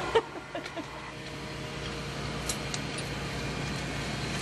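Steady hum of the space station's cabin ventilation, with a sharp click about a quarter second in and a few lighter clicks and knocks as hands handle Robonaut's white stowage box.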